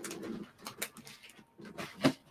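Faint handling noises: a few soft clicks and rustles as pieces of costume jewelry are put down and picked up.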